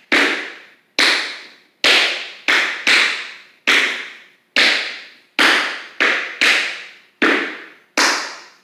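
Tap shoes striking a wooden studio floor in single, evenly paced steps, about one a second with a couple of quicker pairs. Each tap rings on in the room's echo.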